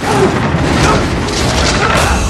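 Loud, dense action-movie sound mix dominated by deep booming effects, with no break in the sound.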